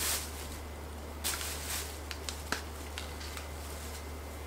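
Faint handling sounds of a plastic bag and a cloth towel: a few soft crinkles and clicks over a steady low room hum.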